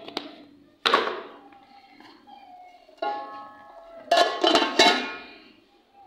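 Steel cooking pot and lid clanging: a sharp knock about a second in, then a strike that rings on with a clear metallic tone at about three seconds, and a louder clatter of metal near the five-second mark.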